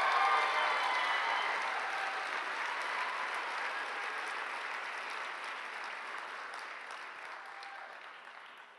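Audience applauding after an award recipient is named, with some cheering at first; the clapping is loudest right at the start and slowly fades away.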